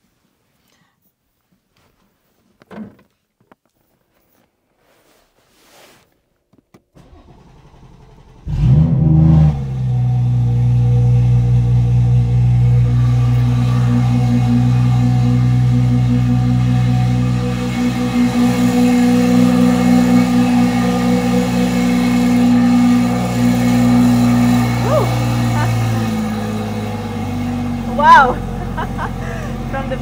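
BMW B58 turbocharged inline-six being started: after a quiet stretch it cranks and catches with a loud flare, then runs at a steady fast idle that settles lower a few seconds before the end. The start is rough, which the owner puts down to the fuel line having run empty during the flex fuel kit install.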